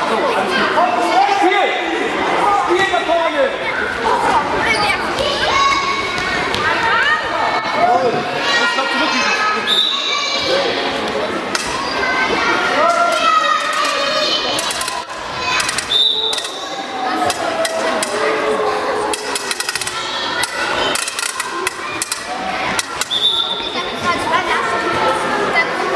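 Girls' handball game in a sports hall: children's voices shouting and calling across the court, with the thuds of the ball bouncing and striking, echoing in the hall. A few short high-pitched tones cut through about ten, sixteen and twenty-three seconds in.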